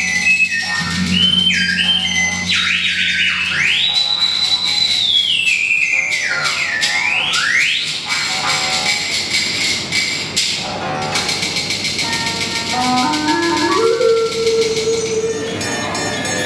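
Vietnamese bamboo flute (sáo) playing a high melody with long held notes and pitch slides that bend up and down. Near the end a lower line of notes climbs step by step.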